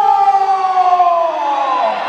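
A man's voice through the microphone holds one long high note and slides down in pitch near the end, like the drawn-out close of a sung or shouted line.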